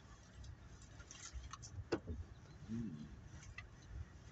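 Faint low rumble of a Nissan pickup truck heard from inside the cab as it rolls slowly over soft mud and rocks, with scattered light clicks and knocks, a sharper one about two seconds in.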